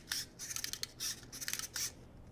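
Clockwork wind-up motor of a Zoids Warshark toy being wound by hand: short runs of quick ratcheting clicks, about four twists half a second apart.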